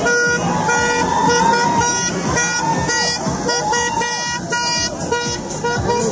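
Vehicle horns honking in repeated short toots as rally vans set off, over people shouting and cheering.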